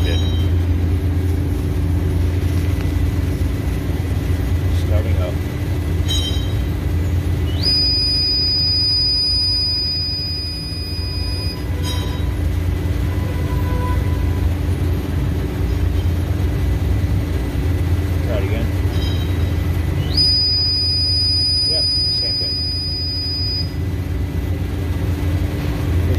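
Induction furnace powering up twice, each time a high-pitched whine that glides up briefly and then holds for about four seconds, over a steady low hum that runs throughout; a few clicks fall around the first whine.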